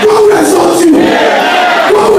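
A single loud voice chanting in long drawn-out phrases that slide downward in pitch, over a crowd of worshippers singing and moving.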